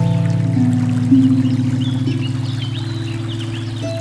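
Slow solo harp music: a few plucked notes entering one after another and ringing over a held bass note, with the steady rush of a river running faintly underneath.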